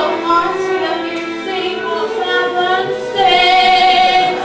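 A woman singing a musical-theatre song solo, her phrases ending on a long held note near the end.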